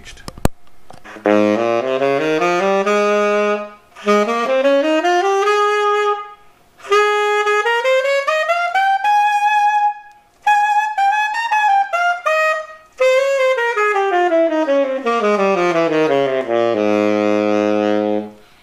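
Tenor saxophone on a Vandoren T35 V5 mouthpiece playing runs that climb from the low register up into the altissimo and back down, in several phrases with short breaks. It ends on a held low note.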